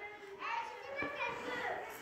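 Faint children's voices in the background, soft and indistinct, during a pause in the teacher's speech.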